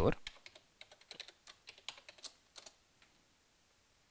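Computer keyboard being typed on: a quick run of separate key clicks lasting about two and a half seconds, then stopping, as a password is entered.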